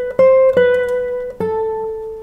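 A 1997 Alfredo Velazquez classical guitar playing a few plucked single melody notes. The last note is lower and noticeably softer and is left ringing: the volume backs off as the line descends.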